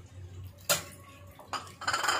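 Metal kitchen utensils clinking against a pan: one sharp knock about two-thirds of a second in and a lighter one about a second later.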